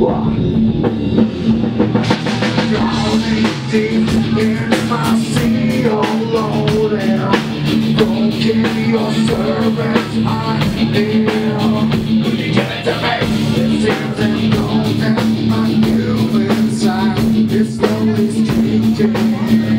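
Live rock band playing guitars, bass and drum kit over a held low note, with a vocalist singing into a microphone.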